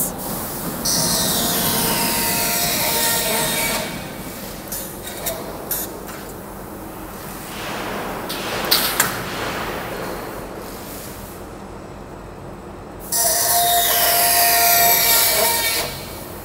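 Flying cut-off saw of a flange roll forming line: the circular metal-cutting saw cuts through the steel profile twice, about a second in and again near the end, each cut lasting about three seconds with a steady whine and hiss. Quieter machine running with a few clicks in between.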